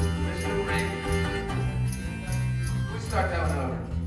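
A small acoustic band plays the closing bars of a country-folk song: strummed ukulele over a bass guitar line, with a shaker keeping time. A last strummed chord comes about three seconds in, and the music stops right at the end.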